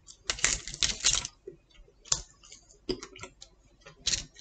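Crisp clicks and crackles of pizza being torn apart by hand over aluminium foil and eaten: a dense run of crackling about a third of a second in, lasting about a second, then a few scattered single clicks.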